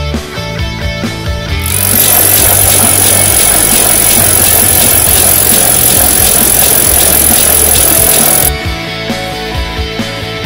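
Rock music soundtrack; from about two seconds in to about eight and a half seconds it becomes a loud, dense wall of noise, then the plainer guitar-and-bass music returns.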